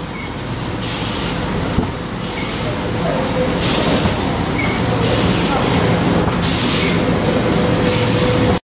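Food-processing production line running: a steady machinery rumble and hum with a faint constant whine, and a brief hiss about every one and a half seconds as the cutting units work.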